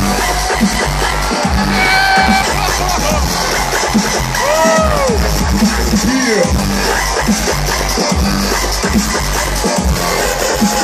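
Loud live dubstep played over a concert sound system, with a heavy bass drop hitting right at the start and sliding synth sounds rising and falling in pitch over the beat.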